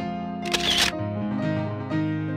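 Soft piano music, with a single camera shutter click, a short sharp burst, about half a second in.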